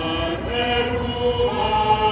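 A choir singing slow, held notes in several parts, with a steady low hum underneath.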